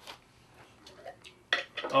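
Faint, scattered clicks and taps of a glass jar being picked up from among cans on a countertop.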